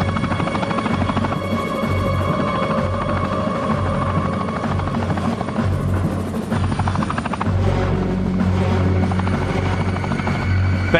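Helicopter rotor chopping fast and steadily while hovering, mixed with film score music holding sustained tones.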